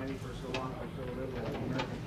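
Indistinct conversation, people talking in a room with no clear words.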